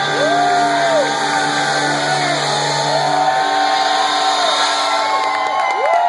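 Club audience cheering and shouting at the end of a rock song, with single voices rising and falling in pitch above the noise. The band's last held chord rings under it and stops a little past halfway through.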